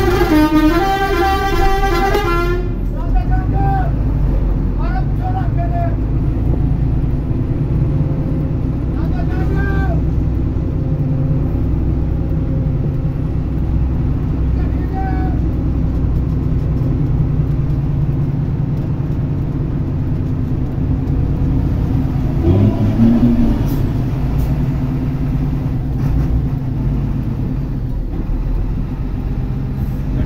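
Diesel engine of a passenger coach running steadily under way, heard from inside the driver's cab, with its pitch rising briefly about two-thirds of the way through. Music from the cab plays for the first couple of seconds and stops abruptly; faint voices and horn toots sit in the background.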